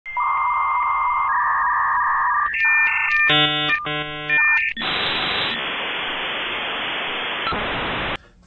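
Electronic glitch sound effect for a channel intro: steady beeping tones over hiss, then a harsh buzzing tone about three and a half seconds in, followed by steady static hiss for the last three seconds.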